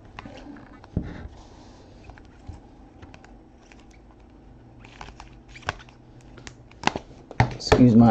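Hard clear plastic trading-card cases being handled and shuffled by hand, giving a few scattered clicks and taps as they knock together, over faint room hum.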